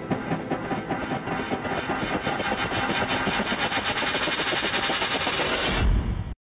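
A dense, rapidly pulsing mechanical-sounding texture with no beat, closing out an electronic instrumental; it grows brighter and louder in the treble toward the end.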